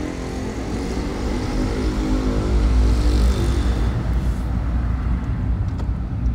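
Car engine and road rumble heard from inside the cabin of a moving car. A pitched engine drone swells to its loudest around the middle and then fades.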